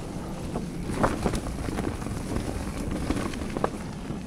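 Wind rushing over the microphone and the rumble of an electric mountain bike's knobby tyres rolling fast over a dirt forest trail, with a few sharp clicks and rattles from the bike over the rough ground.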